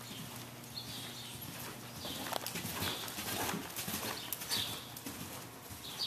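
A horse's hoofbeats on soft arena footing, an uneven series of dull thuds that is thickest in the middle. Brief high bird chirps come now and then.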